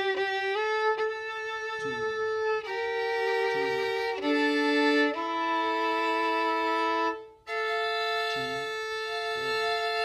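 Solo violin bowed in long held notes, several of them as two notes sounding together, changing pitch every second or two, with a brief break about seven seconds in.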